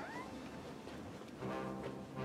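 The tail of a child's imitated cat meow at the very start, then a faint steady musical note about a second and a half in.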